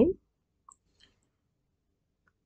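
Near silence with two faint, brief clicks, about two-thirds of a second and a second in.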